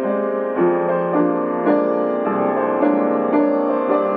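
Piano improvisation in a repetitive minimalist style: short figures of notes repeat and shift over a steady pulse, with a new note or chord struck about every half second.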